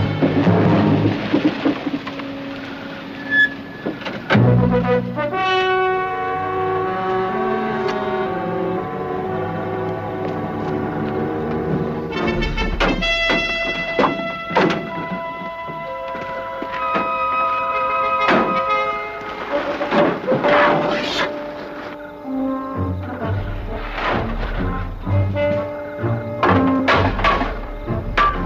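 Orchestral dramatic score with brass, playing sustained held notes that change in steps, punctuated by several sharp accents.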